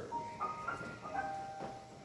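Keyboard playing soft organ-like held notes, entering one after another in the first second and sustaining into a quiet chord.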